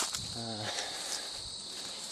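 Steady high-pitched insect chorus, with a short murmured vocal sound from a man about half a second in.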